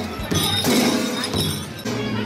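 A glass-shattering sound effect about a third of a second in, laid over steady background music.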